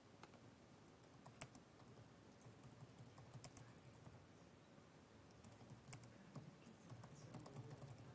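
Faint typing on a computer keyboard: scattered, irregular keystrokes as text is entered.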